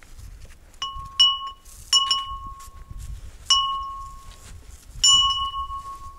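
A small hanging metal bell struck by hand about six times at an uneven pace, each strike ringing on in one clear tone for up to a second.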